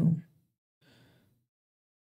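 A man's voice ends on a word, then a short, faint breath without pitch about a second in; the rest is near silence.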